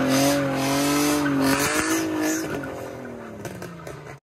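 A car engine held at high revs while its rear tyres spin and squeal, one steady, slightly wavering pitch that fades away over the last two seconds.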